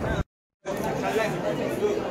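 Several people's voices chattering at once, none of the words clear. A split second of dead silence comes about a quarter of a second in, an edit cut, and then the chatter resumes.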